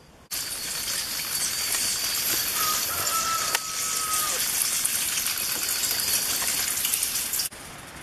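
Irrigation water spraying from garden emitters, a steady hiss that starts suddenly just after the beginning and cuts off shortly before the end.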